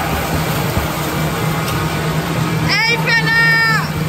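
Spectators cheering on relay swimmers over a steady din of crowd noise and splashing. A loud, high-pitched yell of about a second comes near the end.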